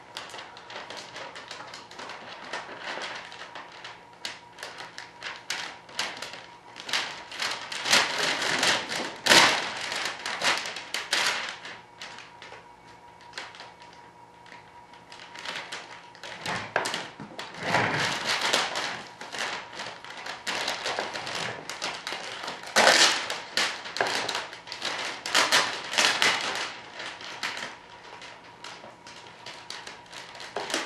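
Plastic vacuum-bag film crinkling and rustling as it is handled and pleated over a composite wing layup. Irregular crackles and taps come in louder spells several times.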